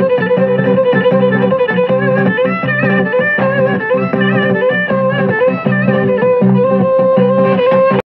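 Cretan folk dance music: a bowed string melody over plucked lute accompaniment, typical of lyra and laouto, with a steady, even beat.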